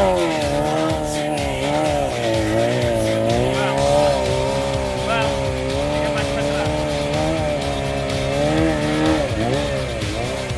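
Honda CBR900 inline-four motorcycle engine held at high revs, its pitch rising and falling continuously as the throttle is worked during tight circling stunts.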